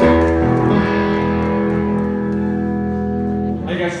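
Electric guitar chord held and ringing out through the amplifier, steady with a deep low end, then cut off just before the end.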